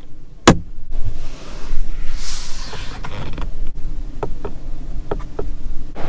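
A sharp click, then a car door's power window motor running as the glass moves, with a few light clicks and creaks along the way.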